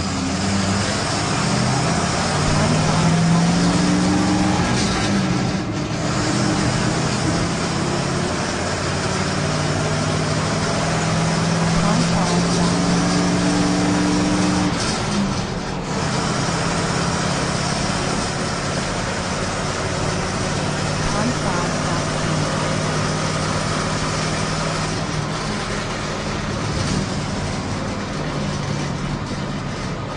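Bus engine running with a steady low drone that shifts slightly in pitch now and then, under constant mechanical noise.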